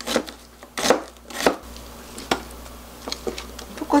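Chef's knife slicing onion on a cutting board: a string of sharp, irregular knife strikes against the board, a few each second.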